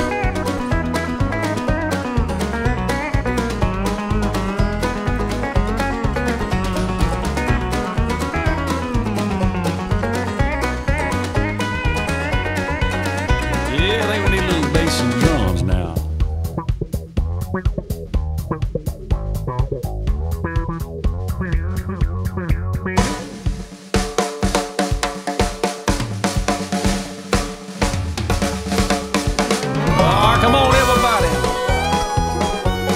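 Country band instrumental break led by a steel guitar with sliding notes, over drums, bass and guitars. From about halfway through the drums come more to the front.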